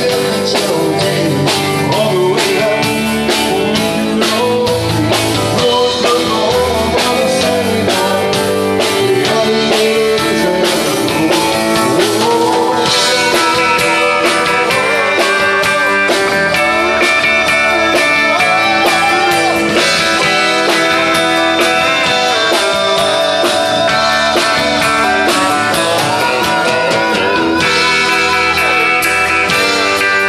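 Live country-folk rock band playing with a steady drum beat: strummed acoustic guitar, electric guitar, bass guitar and drum kit. The sound grows fuller and brighter about halfway through.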